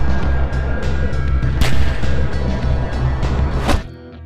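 Loud action-film score with a heavy pulsing bass, broken by two sharp bangs, one about halfway through and one just before the end, when the loud music cuts off.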